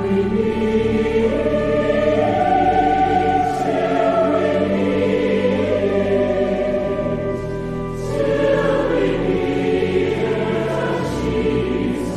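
A choir singing long, held chords over a musical accompaniment.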